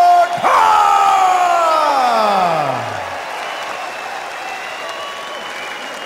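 Ring announcer's drawn-out call of the winner's name: the held note breaks off, then a long final note slides down in pitch over about two and a half seconds. A crowd cheers in an arena underneath and carries on more quietly after the call ends.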